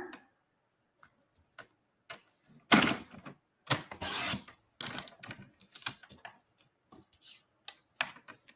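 Sliding-blade paper trimmer cutting through cardstock: the blade carriage scrapes along its rail in a short stroke about three seconds in and a longer one about a second later. Scattered clicks and light paper handling come before and after.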